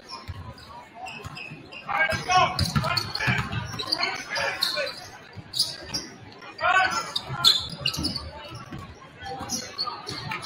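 Basketball dribbled on a hardwood gym floor during live play, with knocks from the bounces. Loud shouted voices echo in the gym for a few seconds after the start and again near the end.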